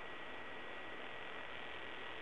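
Low, steady hiss of recording background noise with a faint high whine held on one pitch.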